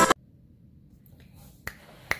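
Electronic music cuts off abruptly at the start, leaving a faint room hush. About one and a half seconds in there is a single sharp click.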